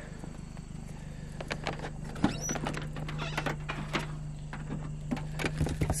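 Footsteps on asphalt and light knocks and clatter of things being handled, with a steady low hum that starts suddenly about two seconds in.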